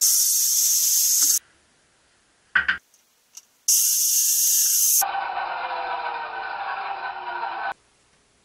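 A handheld power saw cutting a board in two loud, hissing bursts that cut off suddenly, with a short knock between them. In the last few seconds it runs lower, with a slowly falling tone.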